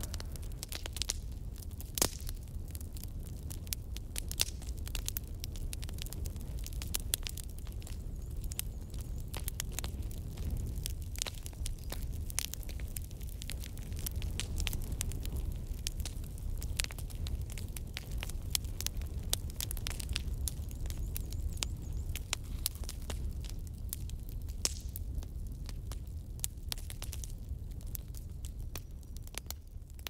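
A fire burning, crackling with frequent irregular sharp pops over a steady low rumble.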